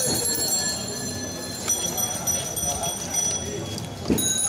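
A steel spoon clinking against an aluminium pot and plate, each click leaving a high metallic ring, over voices in the background.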